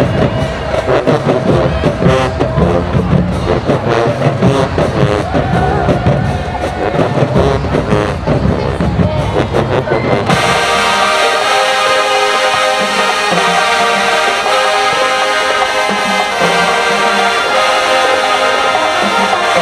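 Marching band in the stands playing brass and drums, with crowd noise behind. About ten seconds in, the sound cuts abruptly to smooth, held chords with no drums.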